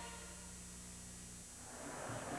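The last of a choir jingle dies away over a low steady hum, then the noise of a large stadium crowd fades in near the end.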